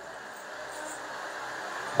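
Steady, even background noise with no distinct event: a low hiss from the sound system and the open-air setting.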